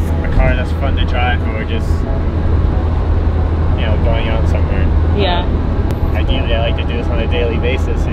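Open-top Mazda Miata on the move: a steady low rumble of wind buffeting and road and engine noise runs throughout, under a man and a woman talking.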